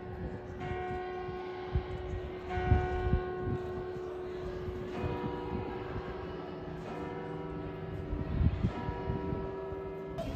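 Church bells of St. Lorenz in Nuremberg tolling the hour, a new stroke about every two seconds, each ringing on into the next.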